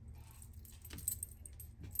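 Faint handling of small Lenormand cards on a tabletop: a few light clicks and scrapes as the cards are slid and laid down.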